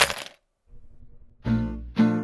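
A bunch of keys dropped onto a desk, a brief metallic jingle right at the start, followed by a moment of quiet. Music with a plucked guitar comes in about a second and a half in.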